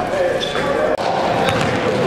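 Basketball bouncing on a hardwood gym floor, a few sharp knocks, under a steady voice with long held notes.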